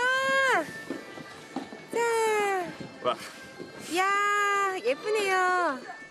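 A woman's high-pitched, drawn-out exclamations of delight: three long cries about two seconds apart, each sliding down in pitch.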